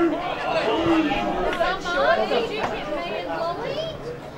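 Several people talking over one another close to the microphone: spectator chatter.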